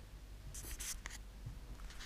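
Faint handling noise from a handheld camera being swung around: a few short bursts of rustling about half a second to a second in, over quiet room tone.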